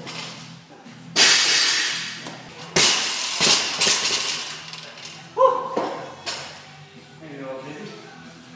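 Two loud crashes about a second and a half apart, each trailing off in a metallic clatter, typical of a loaded barbell with bumper plates being dropped on a rubber gym floor, over steady background music.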